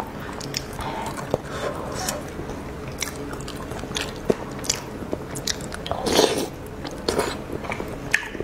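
Close-miked wet chewing and lip smacks of soft pig brain in red chili oil, with many short sharp clicks throughout and a louder wet stretch about six seconds in.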